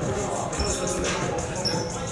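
Basketball dribbling and thumping on a hardwood gym floor during play, with a couple of short high squeaks over the general noise of the game.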